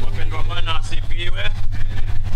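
A loud, steady low rumble that pulses a few times a second, with a faint voice rising and falling through the first half.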